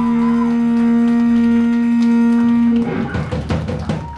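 Live blues band: an electric guitar and bass hold one long sustained note, then, a little under three seconds in, the drum kit breaks in with a burst of quick hits and cymbal crashes, the closing flourish of the song.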